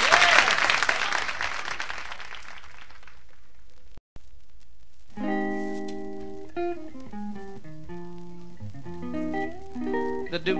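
Audience applause dying away, a brief dropout to silence about four seconds in, then from about five seconds in a jazz guitar playing soft sustained chords that change every second or so.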